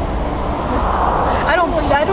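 Busy street traffic noise, a steady rumble and rush of passing vehicles that swells around the middle as one goes by. A voice starts near the end.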